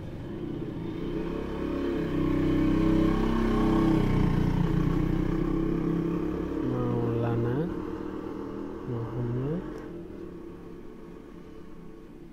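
A motor vehicle's engine going past: a low rumble that swells over the first few seconds, is loudest around three to five seconds in, then fades away.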